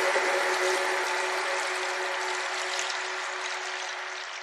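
The fading tail of a channel-intro logo sting: a held tone over a hissy shimmer, slowly dying away.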